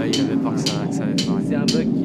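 A voice over the venue's PA system, speaking over a low held synth chord as the recorded intro dies away.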